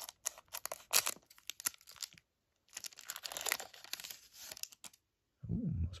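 Scissors snipping open a foil trading-card pack, with sharp crackles over the first two seconds. Then the foil wrapper crinkles for about two seconds as the cards are slid out.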